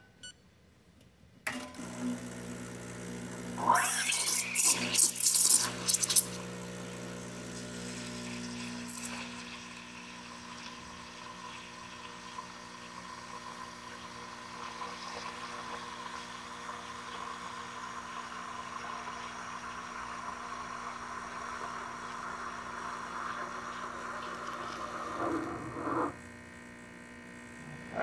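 Rocket Appartamento heat-exchanger espresso machine pulling a shot and steaming milk at once. Its vibratory pump hums low from just after the start. A few seconds in, the steam wand opens with loud, sputtering hissing and a short rising squeal, then settles into a steady steaming hiss that cuts off about two seconds before the end.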